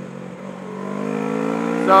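Motorcycle engine pulling under acceleration: a steady note that rises in pitch and grows louder from about half a second in.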